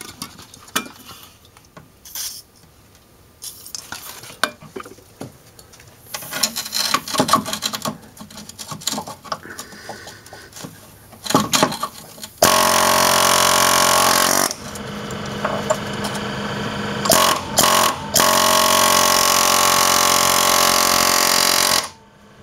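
Air chisel hammering on a stuck stabilizer-bar-to-lower-control-arm bolt, driving it out as it starts to move. The first half holds light clicks and rattles. From about halfway come long, loud bursts of rapid hammering with short pauses, and these stop right at the end.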